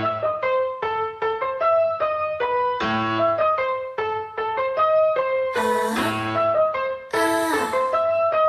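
Dance backing track playing loud: a melody of short, staccato keyboard notes over a bass line. Three swishing sweeps come in over it from about halfway through, each around a second and a half apart.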